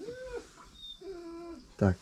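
A cat meowing twice, faintly: a short rising-and-falling meow, then a longer, steadier meow about a second later.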